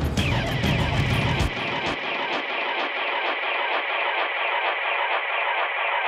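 Runway music with a beat. About a second and a half in, its bass and treble cut away, leaving a thin, filtered wash in the middle range: a DJ-style filter transition.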